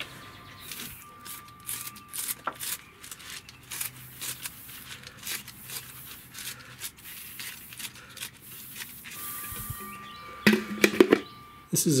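Kitchen scissors snipping through fresh salad greens: a long run of short, crisp, irregular snips.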